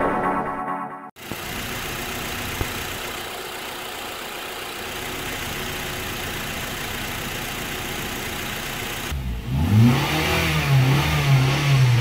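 A 2008 Honda Accord's 2.4-litre DOHC i-VTEC four-cylinder engine idles steadily. From about nine seconds in it is revved: two quick blips up and down, then held at around 4,000 rpm. A short logo whoosh and music sting ends about a second in.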